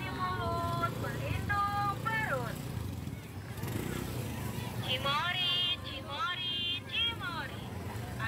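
Busy street-market ambience: a steady low motorbike engine rumble under people's voices, which come loudest in the first couple of seconds and again around the middle.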